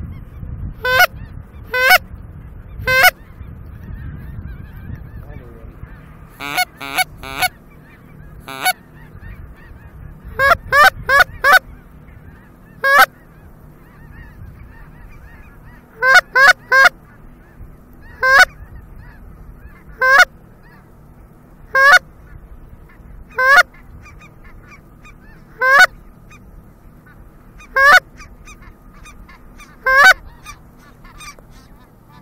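Loud, close goose honks, each breaking sharply upward in pitch. They come in quick runs of three or four early on and again about ten and sixteen seconds in, then as single honks about every two seconds.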